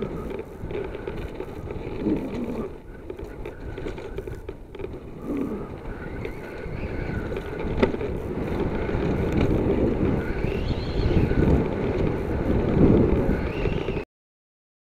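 Wind buffeting the microphone and tyres rolling over a dirt trail, with knocks and rattles from a mountain bike on rough ground, getting louder toward the end as the ride speeds up.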